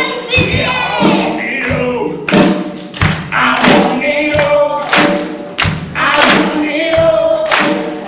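Several voices singing together in chorus over rock accompaniment, cut by heavy drum beats.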